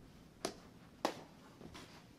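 A sword and a plastic toy lightsaber clashing twice in a fencing bout: two sharp clacks a little over half a second apart.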